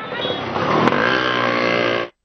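A motor vehicle's engine passing close by on a street, its pitch dropping and then holding steady.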